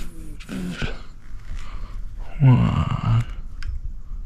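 A man's short wordless murmurs, then one longer hum about two and a half seconds in that lasts nearly a second.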